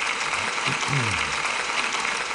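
A round of applause: an audience clapping, steady and dense, with a short laugh-like voice partway through.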